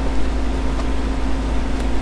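A steady low hum with a constant mid-pitched tone over it, unchanging throughout.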